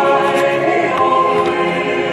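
Choral music: a choir singing slow, sustained chords.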